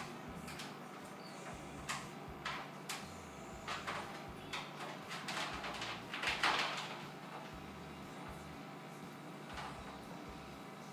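Faint scrapes and light knocks of a handmade wire hanger swirl tool being drawn through soap batter and bumping the loaf mold, in short irregular strokes, the longest and loudest scrape about six and a half seconds in.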